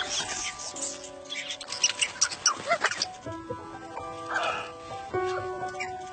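Background music from an animated short, held notes running steadily, with a run of sharp clicks and a short squeaky cartoon animal sound about two to three seconds in.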